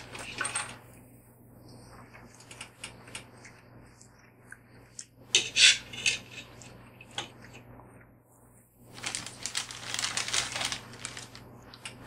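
Metal forks clinking and scraping against opened sardine tins and a plate, in scattered sharp clicks, the loudest clatter about halfway through. Near the end comes a longer spell of rustling and scraping.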